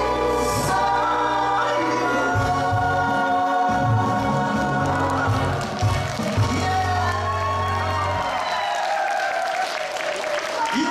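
A live performance of a Korean song: a male singer's voice with backing singers over a band. The band's bass drops out about eight seconds in while the voices carry on.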